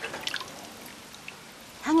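Faint, sparse wet crackles from boiled bamboo shoots being torn and handled by hand, mostly in the first half; a woman's voice starts near the end.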